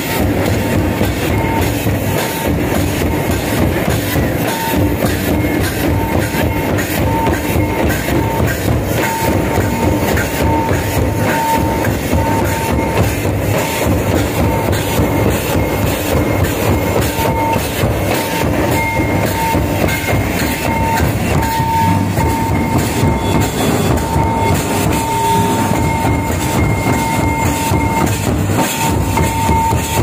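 Santali tamak' kettle drums and other folk drums beaten with sticks in a continuous, dense rhythm for a line dance. A thin high note sounds on and off above the drumming.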